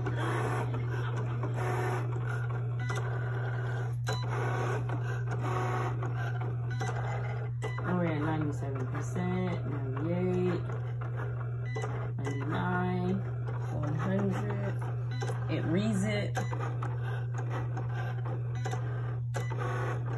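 Indistinct background voices with some music, over a steady low hum.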